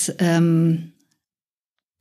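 A woman speaking German, her voice stopping a little under halfway through, followed by dead silence.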